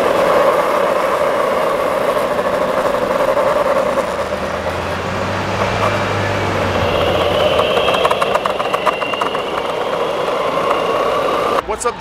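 Boosted electric skateboard rolling along a concrete sidewalk: steady wheel and drive noise with a faint whine that climbs in pitch through the middle, and a quick run of clicks and rattles partway through.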